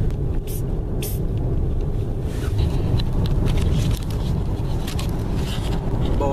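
Road and engine noise inside a moving car's cabin, a steady low rumble, with a couple of brief rustles about half a second and a second in.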